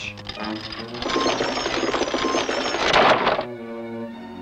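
Cartoon sound effect of a castle drawbridge being raised: a fast mechanical rattling clatter that starts about a second in and stops suddenly near the end, over background music.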